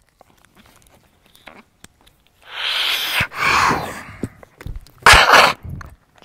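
Beatboxer making vocal effects into a handheld microphone: a long breathy whoosh that slides down in pitch, then a short, loud burst about five seconds in.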